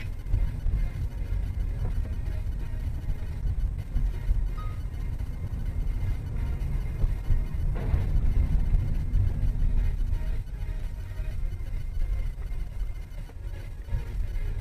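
Music playing over a steady low rumble of car and road noise.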